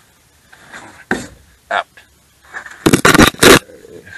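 A cluster of loud, short scraping and rustling noises close to the microphone, about three seconds in.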